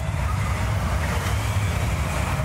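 Steady rumbling wind with a deep low roar underneath: a storm sound effect behind a tornado warning message.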